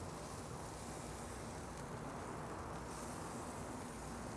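Pork sausage links sizzling over hot charcoal on a grill grate: a faint, steady hiss.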